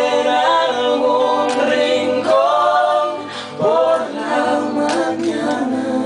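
A man and a woman singing a duet in harmony, with acoustic guitar under them, stretching out the end of a sung line on long held notes. The sound fades away near the end.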